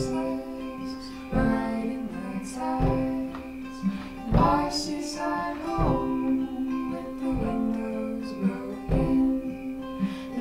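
Live acoustic song: an acoustic guitar strummed in strokes about every second and a half over sustained chords on a Casio digital keyboard, with a man and a woman singing.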